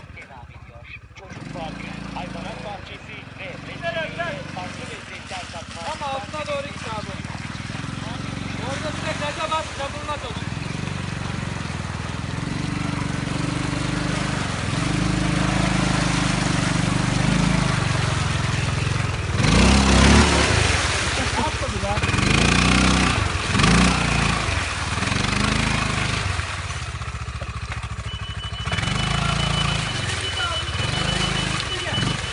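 Quad bike (ATV) engine working through deep mud and water, the drone building steadily, then revving up and down several times in quick swells about two-thirds of the way through, the loudest part.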